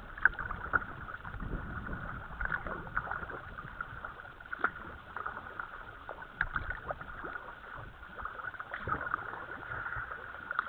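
Kayak paddles dipping into calm canal water: irregular splashes, drips and light knocks from the strokes, over a steady hiss.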